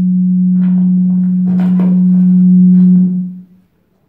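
A loud, steady low hum at one pitch, slowly growing louder, that cuts off a little after three seconds in. A man's voice is faintly audible under it.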